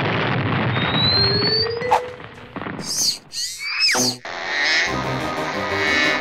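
Cartoon explosion sound effect: a loud boom with a rumble lasting about two seconds. It is followed by a few short high squeaks and a whistle that glides up and falls. Background music with a steady beat comes in about five seconds in.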